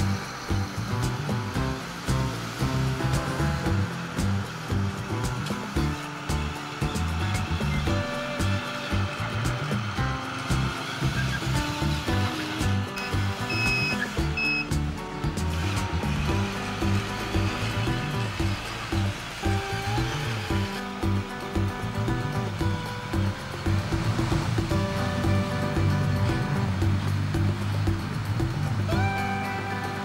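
Background music with a steady beat and pitched instrumental notes.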